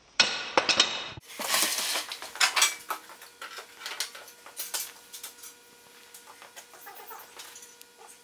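A cordless impact driver hammers a bolt tight in a burst of about a second. Then comes irregular metallic clanking and rattling from the steel-framed go-kart as it is pushed across a concrete floor.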